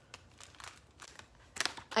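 Plastic packaging crinkling and rustling as items are handled, faint at first, with a short burst of sharp crinkles near the end.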